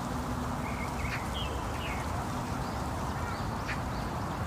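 Birds giving a few short, scattered chirps and calls over a steady rushing noise.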